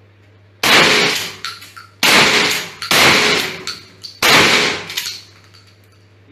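Pump-action shotgun fired four times in quick succession, roughly a second apart, each shot ringing off the walls of an indoor range.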